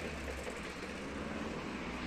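Town street traffic noise: a steady low rumble of car engines and tyres, with no single loud event.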